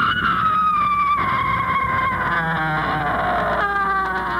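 A woman screaming: one long, high scream that slowly falls in pitch, then a second, lower cry near the end.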